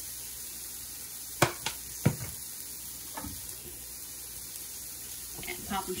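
Asparagus spears sizzling steadily in a hot skillet, with a few sharp knocks in the first half.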